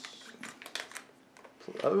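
Plastic blind-bag wrapper crinkling as it is handled, with a few faint clicks of small plastic LEGO pieces landing on a tabletop in the first second.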